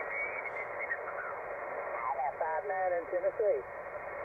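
Kenwood TS-480HX HF transceiver's speaker hissing with band noise, narrow and cut off above the voice range, as the radio is tuned across the 20-meter band. About halfway through, a faint single-sideband voice from a distant station comes up out of the noise, a Route 66 special event station.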